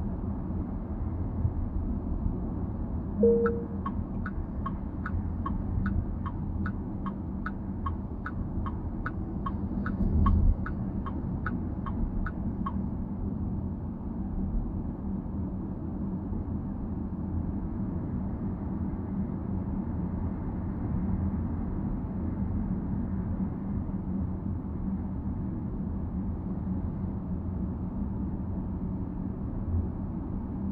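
Car cabin road and tyre noise while driving. A few seconds in, a short tone sounds, then a turn-signal indicator ticks about twice a second for roughly nine seconds, with a low thump near the middle of the ticking.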